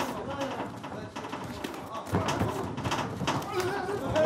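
Fighters' feet and strikes thudding and tapping on the ring canvas, many short knocks, under faint voices from ringside.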